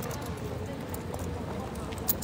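Pedestrian street ambience: footsteps clicking on stone paving as people walk past, with indistinct voices in the background.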